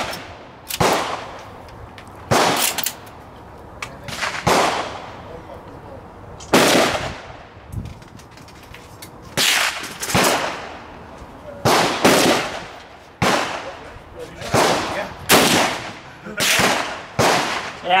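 Rifle gunfire on a shooting range's firing line: about a dozen sharp reports at uneven intervals, some less than a second apart, each trailing off in a short echo. The shots come too fast for a single bolt-action rifle, so several rifles are firing.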